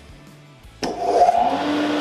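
Dust extractor switching on about a second in: a click, then a rush of air and a motor hum that rises in pitch as it spins up and then runs steady. It has been started automatically by the iVac system the moment the tool on line one was switched on.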